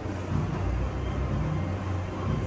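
A steady low rumble under a haze of noise, with no clear speech or music.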